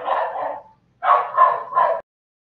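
A dog barking: two quick runs of short, sharp barks that cut off abruptly at the end, as if a call participant's microphone was muted.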